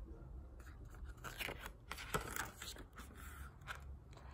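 Faint rustling and crackling of a picture book's paper pages being handled and turned, in a string of soft, irregular crackles.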